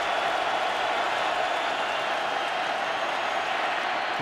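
Football stadium crowd noise: a steady, even roar of many voices with no breaks.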